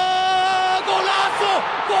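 Spanish-language football commentator's goal cry: one long held shout at a steady pitch that breaks off a little under a second in, followed by a run of short shouts falling in pitch as he calls "¡Golazo!"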